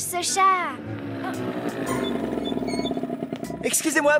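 A girl's voice trailing off with a falling pitch, then a small motor scooter's engine buzzing as it approaches and pulls up.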